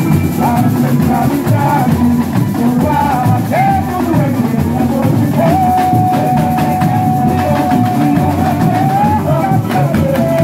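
Samba school drum section (bateria) playing a samba-enredo with a singer over it, the voice holding one long note from about the middle to near the end.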